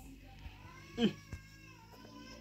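A cat meowing, with a short, sharp call about a second in and a thin, drawn-out high call after it.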